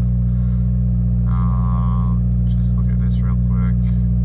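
Subaru WRX's turbocharged flat-four engine idling steadily, a deep even drone heard from inside the cabin.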